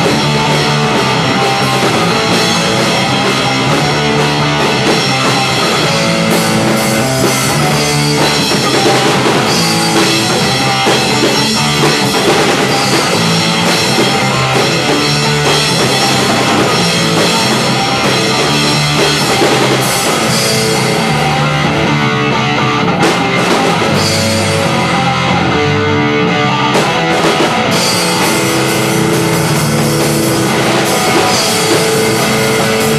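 Rock band jamming loudly on electric guitars and a drum kit, playing without a break. About 21 seconds in the cymbals drop away for several seconds, then come back in near the end.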